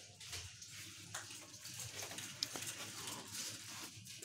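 Faint background noise of a shop, with handling rustle from a handheld phone and one sharp click about two and a half seconds in.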